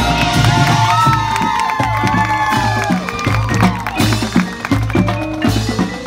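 High school marching band playing: brass with drums and front-ensemble percussion, with sustained and sliding pitched notes over steady drum strikes.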